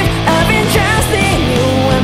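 Rock song played by a band with electric guitar and drums, loud and steady throughout.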